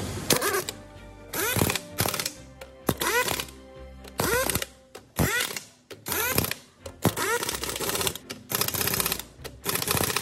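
Impact wrench with a long extension bar hammering on truck wheel nuts in about ten short rattling bursts, each under a second, one nut after another.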